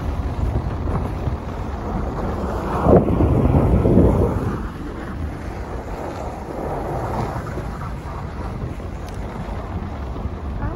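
Steady low rumble of a car driving on a snow-packed road, heard from inside the cabin, swelling louder for about a second and a half around three seconds in.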